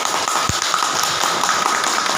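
Audience clapping and cheering, a dense patter of claps and voices, with one low thump about half a second in.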